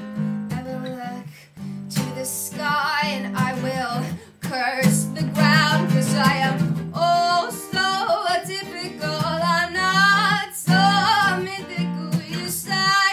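A woman singing over her own strummed acoustic guitar: several sung phrases with wavering held notes, broken by short pauses, over steady chord strumming.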